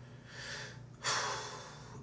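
A man's audible breaths in a pause between phrases of speech: a faint one about half a second in, then a longer, louder one from about a second in.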